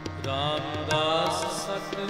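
Sikh shabad kirtan: a male voice singing a long, wavering line over harmonium, with tabla accompaniment.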